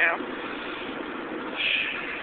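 Steady road and engine noise of a car cruising at highway speed, heard inside the cabin through a phone's microphone.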